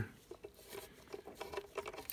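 Faint, scattered light clicks and scraping of a bolt in a socket being worked down into a bolt hole on a Duramax engine's Y-bridge intake pipe.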